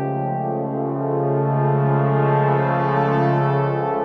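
Music: brass instruments holding a sustained chord over a low bass note, moving to a new chord near the end.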